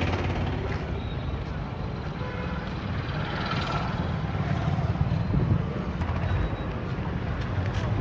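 Busy street traffic: motorcycle and car engines running as they pass, a steady low rumble.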